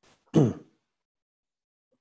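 A person clearing their throat once, a short sound that falls in pitch, about half a second in.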